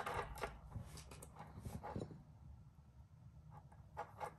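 Small beads being threaded by hand onto memory wire: a few faint, scattered clicks and light rustles.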